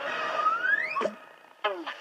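Cartoon sound effect of a stuck pacifier being pulled free: a rising squeak that ends in a pop about a second in. After a brief pause, a second short effect follows near the end, with a falling tone and clicks.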